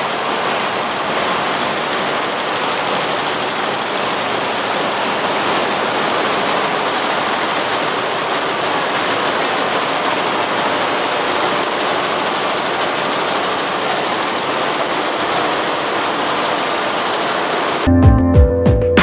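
Multi-head industrial embroidery machine running, its needle heads stitching at speed and giving a steady, even mechanical clatter.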